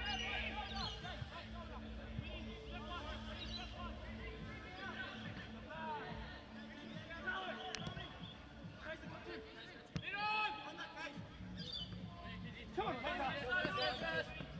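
Live pitch-side sound of a football match: players' distant shouts and calls over a low hum, with a couple of sharp ball-kick thumps about 8 and 10 seconds in, and louder shouting near the end.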